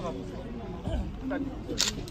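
Several people talking and calling out, with a dull thump about a second in and a short, sharp click near the end.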